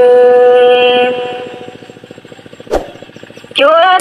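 Red Dao hát lượn folk singing: a voice holds one long sung note that fades out about a second in. A quiet stretch with a single click follows, and the singing starts again near the end.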